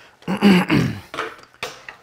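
Handling noise from a camera being moved about close to its microphone: a loud rubbing and knocking in the first second, then a few lighter clicks.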